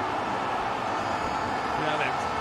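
Steady crowd and ground noise at a cricket stadium during a six, with no commentary over it.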